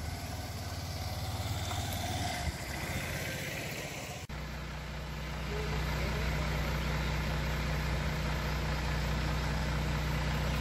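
A motorcycle engine running, then, after a cut about four seconds in, a truck engine idling steadily with a deep, even drone.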